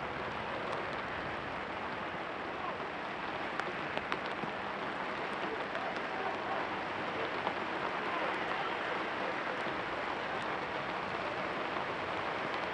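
Steady hiss of rain, with faint distant shouts from players on the pitch and a few sharp ticks about four seconds in.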